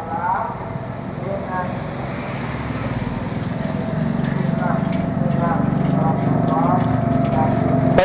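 A motor engine running nearby, getting steadily louder from about halfway through, under faint background chatter.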